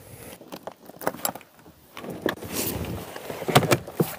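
iKamper Skycamp 3.0 hardshell rooftop tent being unlatched and popped open. Several sharp clicks and knocks of the latches and shell, with about a second of rustling fabric in the middle as the tent unfolds, and louder knocks near the end.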